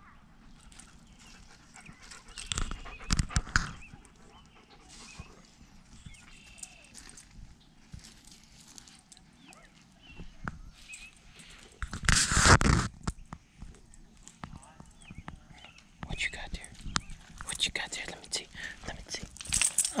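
A dog nosing and chewing in dry pine needles and dirt: scattered crackles and rustles, with louder bursts of noise about three and twelve seconds in.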